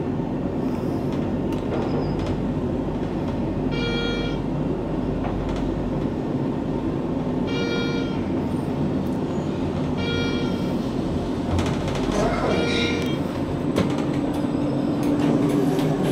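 Schindler 5400 machine-room-less traction elevator cab riding up with a steady running hum. A short floor-passing chime sounds four times as it passes floors, and a low steady tone joins in during the last few seconds.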